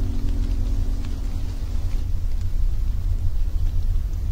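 A loud, uneven low rumble, with the last sustained notes of a song fading out over the first second and a half.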